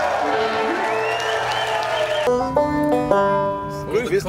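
Live string-band music with banjo, drums and bass. About two seconds in it cuts to a few single notes picked on a banjo alone.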